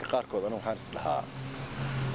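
A man speaking, his talk giving way about a second in to a steady low hum that lasts about a second.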